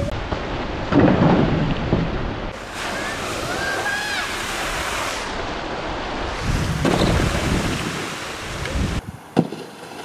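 Wind buffeting the microphone over the rush of flowing water, with heavier gusts about a second in and again around seven seconds. The noise cuts off suddenly near the end.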